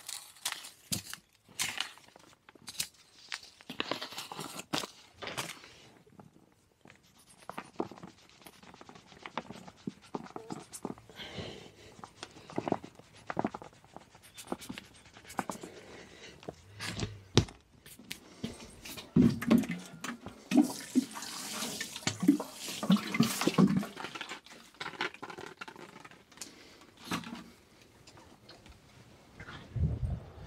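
Hands working compost in a plastic potting tray while sowing seed trays: irregular rustling, scraping and small taps, busiest a little past the middle.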